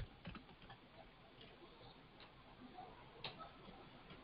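Faint, irregular clicks of computer keyboard keys being typed, over near silence.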